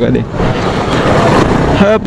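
Steady rushing wind and road noise on a motorcycle-mounted camera mic while riding in traffic. Snatches of the rider's voice sit at the very start and come back near the end.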